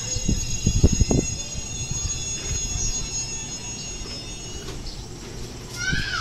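Electric commuter train approaching on the track, a steady low running rumble, with a cluster of low thumps about a second in.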